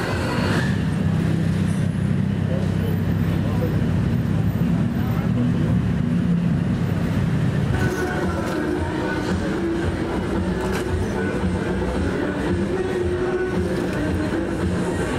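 Busy street ambience: a steady low engine rumble from traffic, with passers-by talking. About eight seconds in the sound changes to a lighter street background with thinner steady tones.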